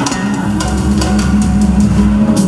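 Live Bihu band playing an instrumental passage between sung lines: a steady held bass note under drums and percussion.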